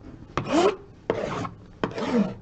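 Small knife blade slicing through the plastic shrink wrap on a box, in about three short scraping strokes.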